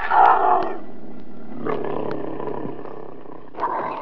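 An animal roar sound effect, loudest just after it begins and drawn out for a few seconds, with a second short burst near the end before it fades.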